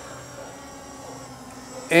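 MJX Bugs MG-1 quadcopter's brushless motors and propellers humming steadily as the drone lifts off in auto takeoff.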